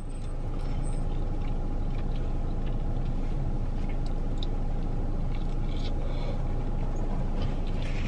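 Steady low hum of a car idling, heard inside the cabin, with a faint steady whine above it and a few faint mouth sounds from chewing.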